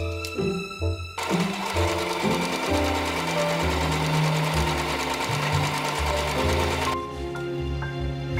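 Electric sewing machine stitching at a steady run, starting about a second in and stopping about a second before the end, over background music.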